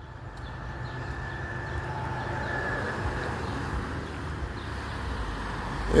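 A car driving past on the street: tyre and engine noise builds over the first two or three seconds and then holds steady.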